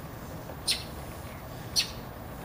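Feathers being plucked from a green-winged teal's breast by gloved hands: two short, sharp rips about a second apart over a steady low background noise.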